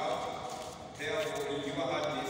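A man speaking into a microphone, in words the recogniser did not transcribe.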